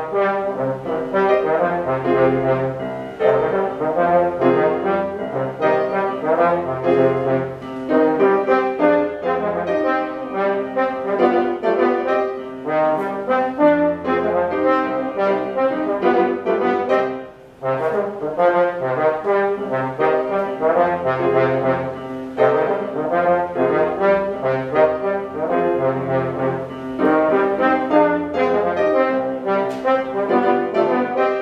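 Slide trombone playing a melody in quick notes with grand piano accompaniment, with a brief break about halfway through.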